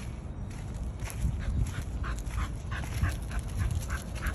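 A liver bull terrier moving about close to the microphone: a run of short soft sounds about four or five a second over a steady low rumble.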